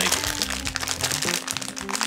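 A shiny foil blind-bag packet crinkling as it is squeezed and felt by hand, with background music underneath.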